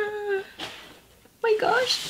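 Two short pitched vocal calls: one held briefly at the start, and one rising and falling near the end.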